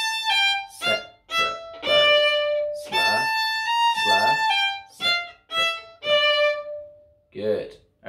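Violin playing a short slurred phrase high on the E string, starting on A and stepping down to a long, lower held note. The phrase is played twice.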